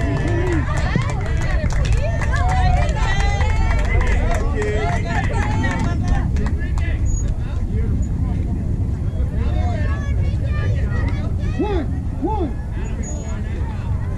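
Overlapping distant voices of players and spectators calling out across a baseball field, busiest in the first six seconds, over a steady low rumble.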